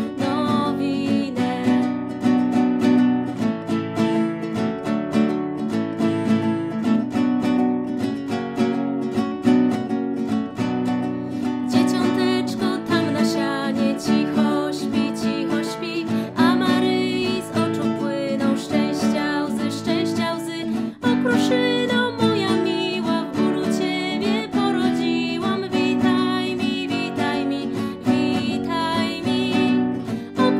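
A woman singing a Polish Christmas carol (pastorałka) to her own strummed nylon-string classical guitar, a Takamine GC5CE.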